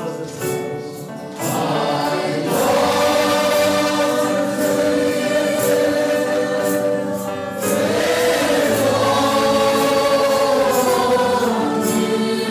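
A choir singing sacred music in long held chords, with new phrases coming in louder about a second and a half in and again near eight seconds.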